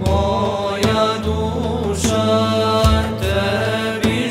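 Vocal-instrumental group singing a Bosnian ilahija, an Islamic devotional hymn, in a studio recording: voices holding and bending melodic lines over a steady instrumental bass, with a few percussive hits.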